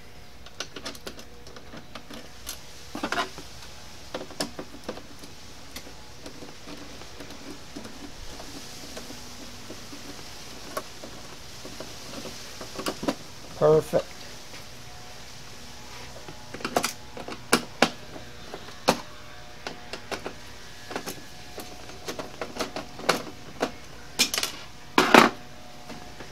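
Scattered small clicks and taps of metal hardware (screwdriver, bolts and washers) on a TV mounting bracket as it is screwed onto the back of a flat-screen TV. A short murmured voice comes about halfway through and again near the end.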